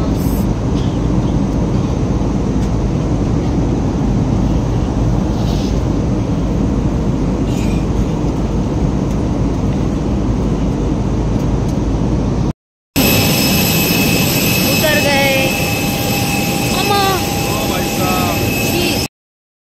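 Steady airliner cabin noise in flight, a loud even rush with no change. After a sudden cut, the whine of jet engines on the apron takes over, with steady high tones.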